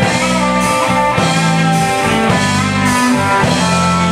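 Live rock band playing, with electric guitar over bass guitar and drum kit.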